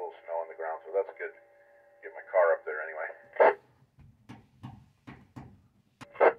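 Ham operators' voices coming through the speaker of a Yaesu FT-991A transceiver on 2 m FM, thin and narrow-band, followed after a gap by a quick run of short clicks.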